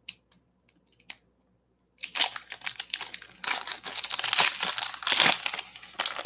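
Foil wrapper of a Revolution basketball card pack being torn open and crinkled by hand: a few light clicks at first, then continuous crackly crinkling from about two seconds in.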